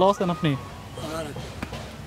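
Speech only: men talking, a short greeting at the start and then quieter talk.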